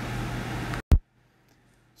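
Steady low hiss and hum of room noise on the recording, which cuts off abruptly a little under a second in with a single sharp click, leaving dead silence.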